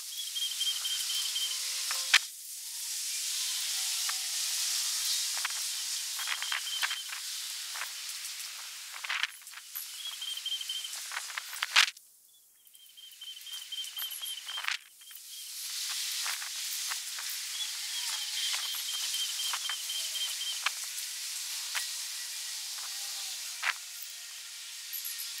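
Outdoor ambience: a steady high hiss that dips out twice after sharp clicks, with short runs of quick high-pitched trilling notes recurring.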